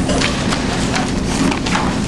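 Irregular clicks and knocks over a rustling noise close to the microphone, typical of handling noise, with a faint steady hum underneath.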